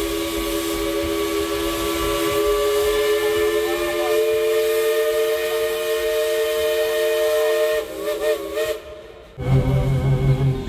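1938 Baldwin steam locomotive's whistle blowing one long chord of several notes for about eight seconds. Its pitches shift slightly about four seconds in, then it wavers and cuts off near the end.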